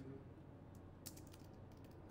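Faint typing on a computer keyboard: a short run of separate keystroke clicks, most of them bunched together about a second in.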